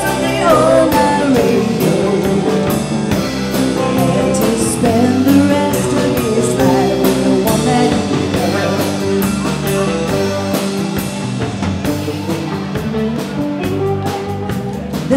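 Live rock band playing: drum kit, electric guitars, electric bass and keyboard, with a wavering lead melody over a steady beat. The recording is loud and set too hot, so it sounds overdriven.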